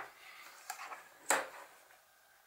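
A cork-backed metal ruler being handled and turned over on a cutting mat: soft handling noise, a faint tick, then one sharp light tap just past a second in as it is set down, metal edge down.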